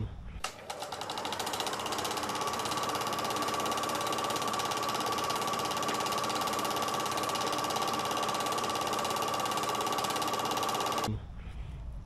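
Film projector running: a fast, even mechanical clatter with a steady whine, starting about half a second in and cutting off suddenly about a second before the end.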